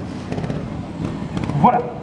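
Trials motorcycle engine running at low revs, with small knocks from the bike on the obstacle, as the rider balances it on the upper step of a platform.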